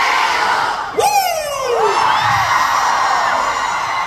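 Concert crowd of fans cheering and screaming, with a cluster of high shrieks sliding in pitch about a second in.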